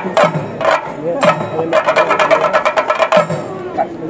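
Chenda drums beaten with sticks: a few separate ringing strokes, then from about a second in a fast roll of strokes lasting about two seconds.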